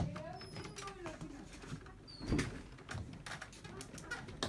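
Wooden bunk bed creaking and knocking as someone climbs its ladder and settles onto the top bunk, with short squeaks and scattered knocks, after a sharp click at the very start.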